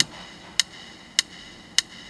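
Four sharp, evenly spaced ticks about 0.6 s apart: a count-in beat, with the keyboard music coming in on the next beat.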